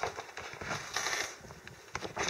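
Handling noise as a white cloth is laid out on a table: the cloth rustles, with scattered light clicks and taps, the densest patch about a second in.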